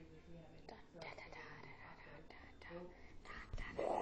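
A person whispering faintly, with a louder breathy rush near the end.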